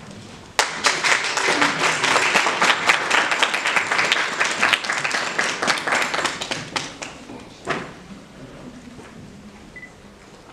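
Audience applauding, starting suddenly about half a second in and dying away after about seven seconds, with a last few scattered claps.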